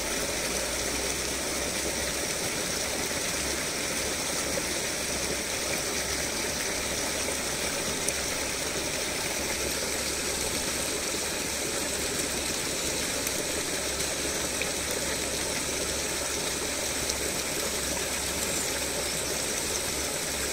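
Steady rush of a shallow forest stream's flowing water, with a low rumble underneath.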